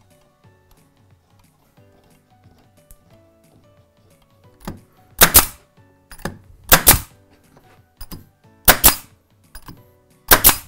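Pneumatic pin nailer firing pins through hardwood slats into a timber frame: three loud, sharp shots in the second half, each with a short hiss of air, and fainter clicks between them.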